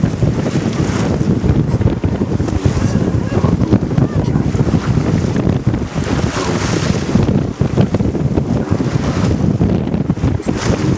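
Wind buffeting the microphone aboard a gaff cutter under sail, over the rush of water along the hull. A steady low rumble runs throughout, with louder hissing surges about five to seven seconds in.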